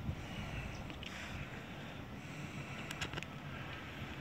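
Faint steady outdoor background noise with a low rumble, like wind on the microphone, and a few faint clicks about three seconds in.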